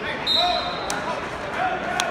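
Referee's whistle blowing one short, steady, high blast of under a second to start wrestling, over the voices and shouts of a gym crowd.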